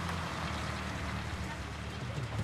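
Motor vehicle engine running steadily with a low hum, over the wider hiss of car-park traffic.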